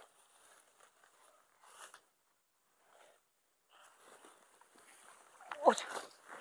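Faint rustling and crunching of grass and dry leaves, fading almost to nothing in the middle and building again, then a sharp "Ouch" near the end.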